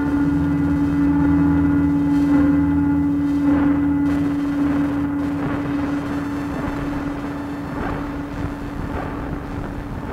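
Analog synthesizer drone holding one steady low note, with deeper tones under it that fade out about halfway, run through a delay. Now and then a struck, piezo-miked box of glass and guitar strings adds a soft ringing hit.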